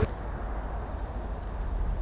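Suzuki DRZ400SM's single-cylinder engine idling steadily at low revs.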